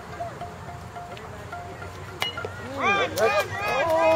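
A softball bat hits the ball with a single sharp ping about two seconds in. Spectators' shouts and cheers start right after and grow louder.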